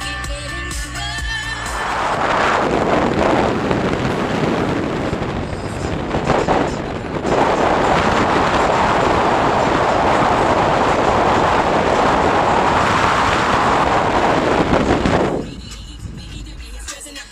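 Loud, steady rush of wind over a camera microphone held out at the open sunroof of a moving car, with a brief dip about six seconds in. Music plays for the first second or so and comes back near the end.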